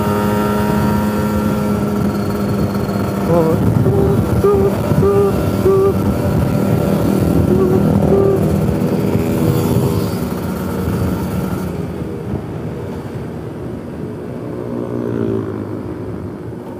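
Two-stroke Kawasaki Ninja RR motorcycle engine running steadily at road speed, heard from the rider's seat with wind noise. About two-thirds of the way through it gets quieter as the throttle eases and the wind drops.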